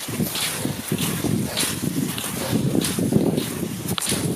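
Wind rumbling on the microphone while cross-country skis skate over snow, a rhythmic swish repeating a little under twice a second.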